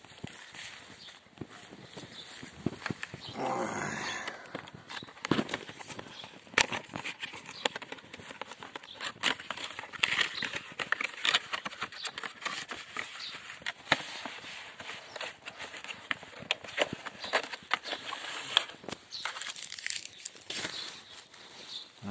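Cardboard product box being opened and handled: a string of scattered clicks, scrapes and rustles as the flaps are pulled open and the inner tray slid out.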